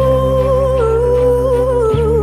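A teenage girl's singing voice holds one long note with vibrato over a sustained backing-track chord, ending right at the close.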